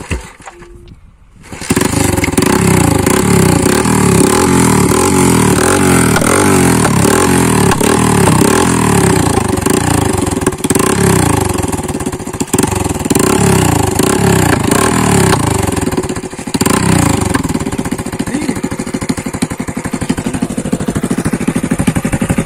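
Bajaj CT 100's single-cylinder four-stroke engine, breathing through two tall straight exhaust stacks, starts up about a second and a half in and runs steadily. It dips briefly near the end and then runs a little quieter.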